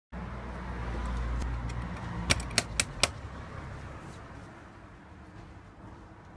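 A steady low rumble with hiss, and four sharp clicks in quick succession a little over two seconds in.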